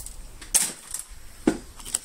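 Four light, sharp clicks and knocks in two seconds, the loudest about half a second in and about a second and a half in: small handling sounds of objects on a cluttered workbench.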